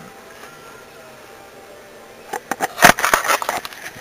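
Faint steady hiss inside a vehicle, then, a little over two seconds in, a quick run of sharp clicks and knocks from the camera being handled and moved. The loudest knock comes about three seconds in.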